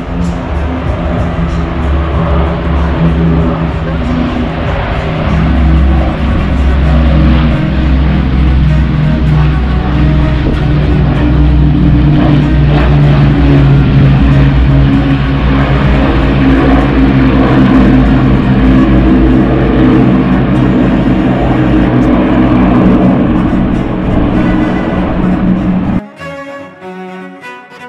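Avro Lancaster bomber's four Rolls-Royce Merlin V12 engines droning in a low flypast. The drone grows louder about five seconds in and stays loud.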